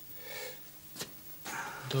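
A soft exhale, then a single light click about a second in, and a man's voice beginning to speak near the end.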